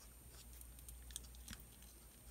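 Near silence: faint scratching of a felt-tip marker being worked on paper, with a couple of small ticks about a second in.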